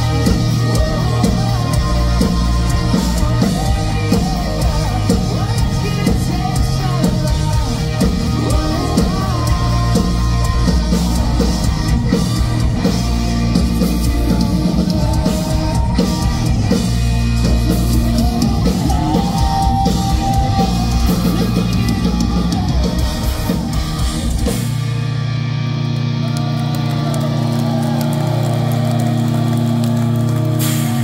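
Live hard rock band playing loud, with a drum kit and electric guitars. About 24 seconds in, the drums stop and a low chord is held and rings on.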